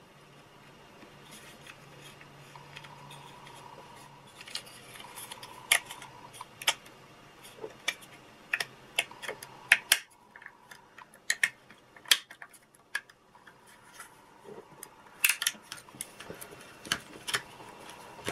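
Irregular small clicks and taps of plastic parts being handled: the plastic gears and black gearbox housing of a toy robot being fitted and pressed together.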